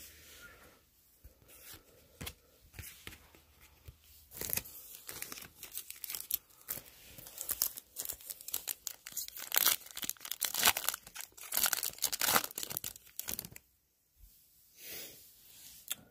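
Wrapper of a Topps Opening Day baseball card pack being torn open and crinkled by hand: a run of tearing and crinkling starting about four seconds in, loudest in its later part, stopping shortly before the end.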